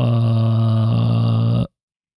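A man's voice holding one long drawn-out vocal sound at a steady low pitch, stopping about three-quarters of the way through.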